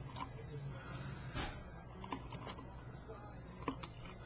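Faint handling sounds over a low steady room hum: a few scattered light clicks as metal tweezers push a shoelace down into a small bottle of dye.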